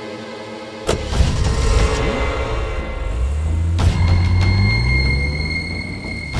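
A vehicle engine starts suddenly about a second in and runs loudly, its pitch rising steadily as it revs up.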